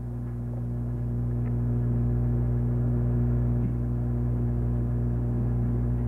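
Steady electrical mains hum with its overtones, growing gradually louder over the first two seconds and then holding level.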